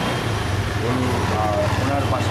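Engine of a three-wheeled auto-rickshaw passing close by, a steady low hum that grows louder about half a second in.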